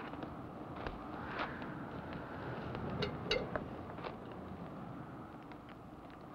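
A small campfire crackling, with a handful of sharp snaps scattered over a steady outdoor hiss.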